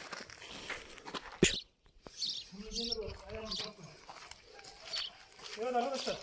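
Quiet, indistinct talking in the background, with a single sharp click about one and a half seconds in, followed by a brief dropout.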